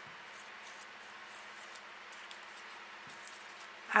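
Faint, scattered small crackles and rustles of fingers peeling the dry outer sheath back from a cattleya orchid's pseudobulb, over a steady low hiss.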